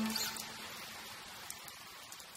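The tail of a slow music track fading out: a last held note dies away just after the start, leaving a faint hiss that keeps getting quieter.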